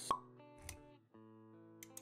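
Intro music for an animated logo sequence, with held notes and a sharp "plop" sound effect just after the start. A soft low thump follows a little past the middle, and the music drops out for an instant around one second before resuming with quick clicks near the end.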